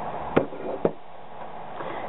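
Two sharp clicks, about half a second apart, from small makeup items being handled.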